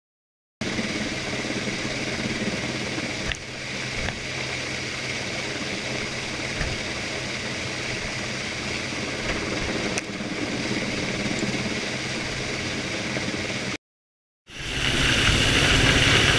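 Helicopter turbine and rotor noise, a steady hum with a rushing, windy haze over it. It cuts out for a moment near the end and comes back louder with the helicopter hovering close overhead.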